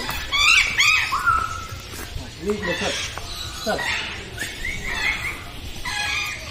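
A macaw calling in a string of short, high squawks and whistles, with a cluster in the first second and more about four seconds in.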